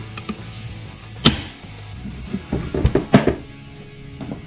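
Background music under the handling of AK pistol parts on a wooden table: one sharp knock about a second in, then a quick cluster of clicks and knocks near the three-second mark.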